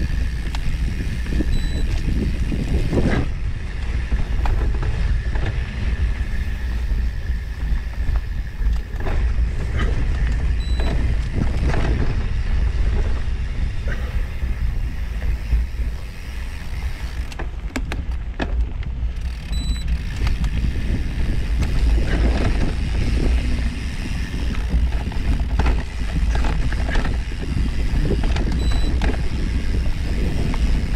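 Bicycle rolling along a dirt forest trail: a steady low rumble of tyres over packed dirt and leaf litter and wind on the microphone, with scattered light clicks and rattles from the bike over bumps.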